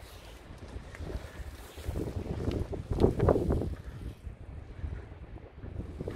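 Wind buffeting a handheld microphone, an uneven low rumble that swells to its loudest about halfway through.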